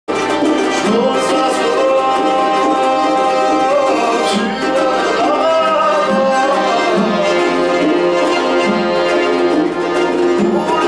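Live Georgian folk band playing in a small room, a sustained melody line sliding between notes over the accompaniment.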